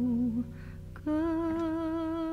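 A singer's hummed vocal line in a slow ballad: a held note with vibrato ends about half a second in, and after a short pause a new, steadier held note begins about a second in, over soft accompaniment.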